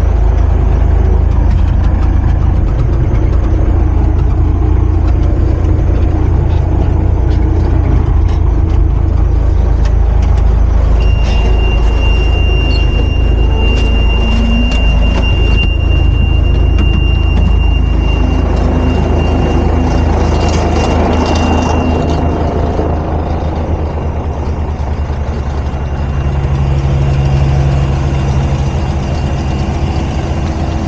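Diesel engine of an M939A2 five-ton military truck running steadily, heard from inside its cab. A thin, high steady tone sounds from about a third of the way in until about two-thirds through. The engine sound then gets quieter over the last several seconds.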